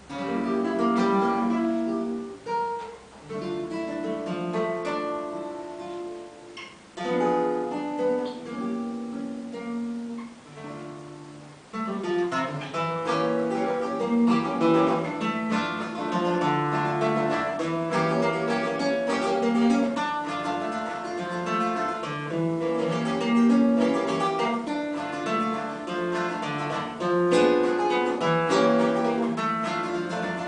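Solo classical (nylon-string) acoustic guitar playing an instrumental introduction with fingerpicked notes and chords. The opening phrases are sparse with short breaks, and the playing becomes fuller and continuous about twelve seconds in.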